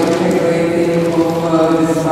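A voice chanting in long held notes that step from one pitch to the next.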